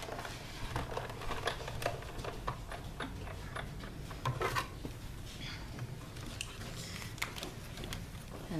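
Hand-cranked Sizzix Big Shot die-cutting machine and the handling of thin steel dies and cardstock at it: scattered small clicks and ticks and light rustling over a low hum.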